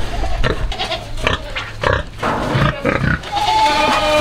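Sow grunting and snuffling as she roots and feeds in straw and grass. Near the end a goat starts bleating.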